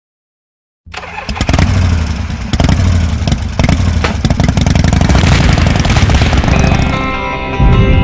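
A motorcycle engine starts up and runs hard, revving loudly, from about a second in. Guitar music comes in near the end.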